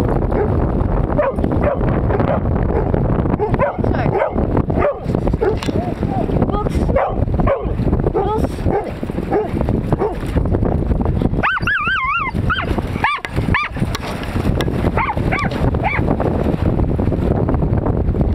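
Dogs yipping, barking and whining as they play in shallow surf, over a steady rumble of wind on the microphone. A long, wavering high whine comes about two-thirds of the way through.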